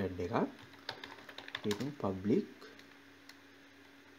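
A few computer keyboard keystrokes: a quick cluster of clicks about a second in and a single one near the end.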